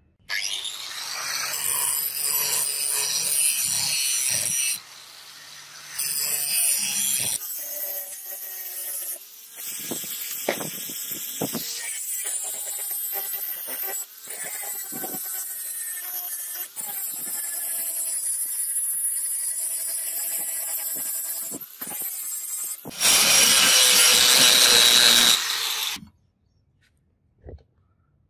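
Angle grinder running with its abrasive disc on a steel knife blade, in several short segments. The motor's whine wavers as the disc bites, and a louder stretch of grinding comes near the end.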